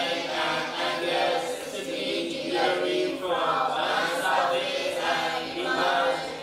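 A group of students chanting aloud together in unison, a continuous chorus of voices with no pause.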